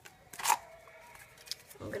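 One sharp snip about half a second in: scissors cutting through a thick cardboard tube stiffened with glued-on paper.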